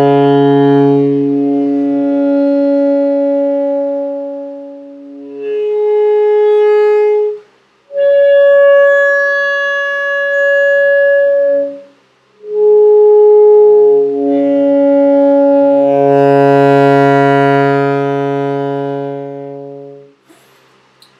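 Alto saxophone playing an overtone exercise in sustained long tones: low B-flat, then the B-flat an octave up, the F above it and the B-flat above the staff, then stepping back down through the same notes to the low B-flat.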